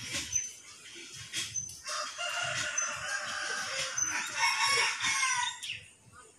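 A rooster crowing: one long, drawn-out call from about two seconds in, falling away just before the end.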